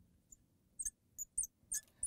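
Marker tip squeaking on the glass of a lightboard while writing a word: a few short, faint, high squeaks.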